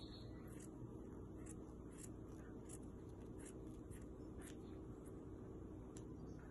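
Faint, short snips of small scissors trimming woven fabric, a snip every half second or so, over a low steady hum.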